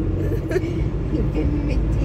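Steady low rumble of road and engine noise inside a moving car's cabin, with a voice faintly heard over it.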